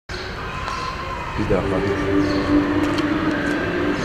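Street traffic noise: a steady low rumble, with a vehicle engine humming at a steady pitch from about a second and a half in.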